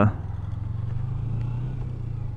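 Small 250 cc motorcycle engine running under way, its note rising a little in the first second and then holding steady.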